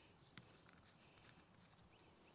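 Near silence, with a few faint clicks of a plastic trigger-sprayer head being screwed onto a plastic spray bottle.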